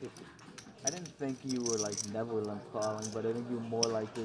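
A man's voice speaking, with faint light clinks now and then.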